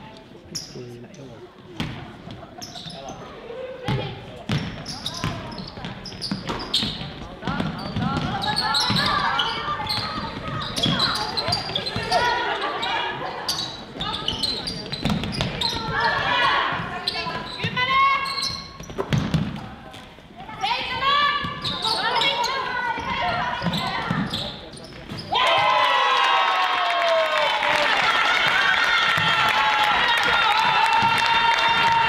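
A basketball bouncing on a wooden gym floor among players' shoes, with shouts from players and the bench echoing in the hall. About twenty-five seconds in, a loud, steady electronic buzzer starts suddenly and holds to the end: the scoreboard horn.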